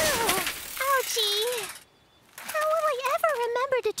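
Leaves of a bush rustling just after a small bicycle has crashed into it, under a short cartoon vocal sound. After a brief near-silent gap, a young cartoon character's voice speaks.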